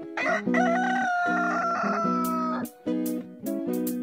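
A rooster crows once, a single long cock-a-doodle-doo that begins just after the start and ends a little past halfway. It plays over a strummed acoustic guitar jingle that runs throughout.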